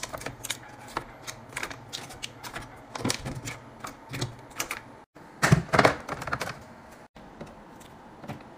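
Plastic food containers being set down one after another into a clear acrylic organizer bin: a quick run of light plastic clicks and taps, with a louder, denser clatter a little past halfway.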